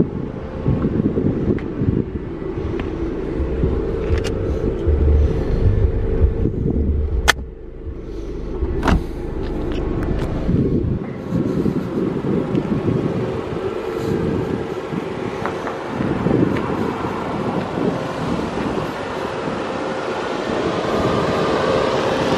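Audi A6 sedan idling with a steady hum, with wind rumbling on the microphone for about the first half and a few light clicks.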